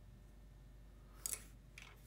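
A single short, light clack about a second in as a thin black rod is set down on a workbench, then a fainter tick. Otherwise quiet room tone with a low steady hum.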